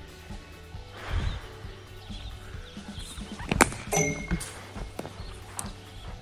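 A cricket bat striking a thrown ball in a front-foot drive, one sharp crack about three and a half seconds in, followed by a brief ringing tone. Quiet background music plays throughout.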